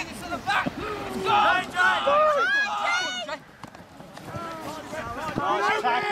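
Several men shouting and calling out at once during a rugby scrum, the loudest yells about one to three seconds in, then a brief lull before the shouting picks up again near the end.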